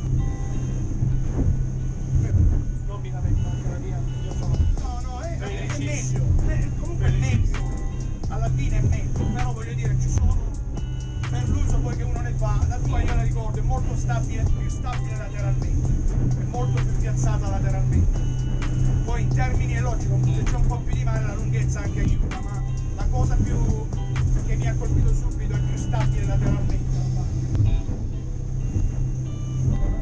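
Steady low drone of a Kevlacat 2800 powerboat's engines running under way, heard from inside the cabin, with music with singing playing over it for most of the time.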